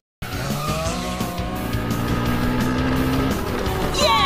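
Racing-kart sound effects, engines running and tyres skidding, over upbeat music. The sound starts after a brief dead gap.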